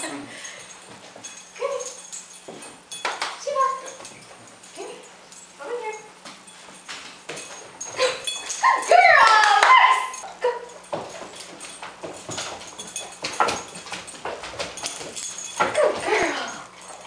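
A dog giving short barks a second or two apart during excited play, with a louder, longer run of vocal sound about halfway through. Sharp clicks and knocks of feet on the floor run throughout.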